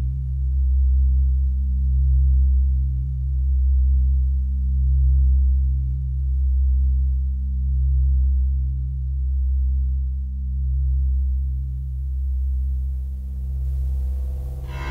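Electronic music: a deep synthesized drone of low steady tones, swelling and fading about every second and a half.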